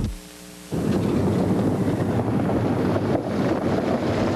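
A car driving past on a gravel road, tyre and engine noise mixed with wind buffeting the microphone. It cuts in suddenly about three-quarters of a second in, after a short hush with a faint hum.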